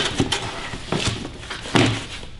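Cardboard boxes rubbing and knocking together as a flat box is lifted out of a shipping carton: a few short knocks, the loudest near the end.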